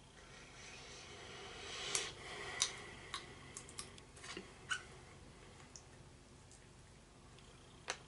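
In-shell sunflower seeds being cracked between the teeth and chewed: a faint scatter of small, sharp cracks and clicks, the two loudest about two seconds in and soon after, then fewer and fainter ones until near the middle.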